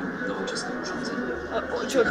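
Indistinct speech: a recorded narration playing over a speaker, mixed with people talking.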